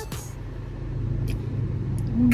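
Steady low rumble of a moving car, with a short click about a second in. The tail of the intro music cuts off just as it begins.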